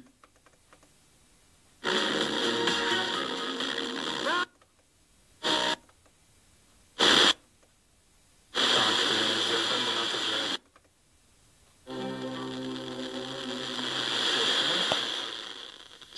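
FM tuner being stepped up the band: silences between channels broken by short snatches of broadcast audio, music among them, from distant stations received over sporadic-E skip. There are two longer snatches, two brief blips, and one more that swells toward the end.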